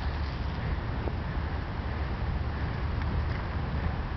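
Steady wind rush buffeting the microphone of a camera riding on a moving bicycle: a deep, even rumble with a hiss over it.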